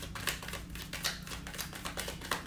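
A deck of tarot cards being shuffled by hand, the cards slapping against each other in a quick, irregular run of light clicks, about five or six a second.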